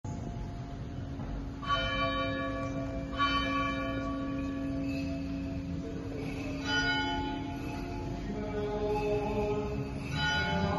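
Church bell tolling slowly, three strokes each ringing on and fading, over a steady low hum. This is the slow mourning toll of Orthodox Holy Week.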